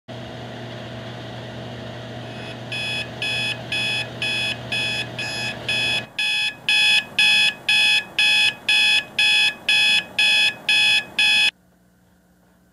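A digital alarm clock beeps at about two high-pitched beeps a second. The beeping starts over a steady hum of dryers running, gets louder when the hum cuts off about halfway through, and stops suddenly near the end.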